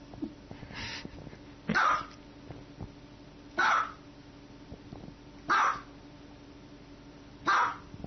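Small white dog barking: four sharp, high barks about two seconds apart, with a fainter one just before them.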